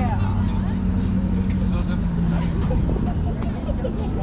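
Diesel engine of a BearCat armored police truck idling with a low, steady hum, described as quiet, under people talking nearby.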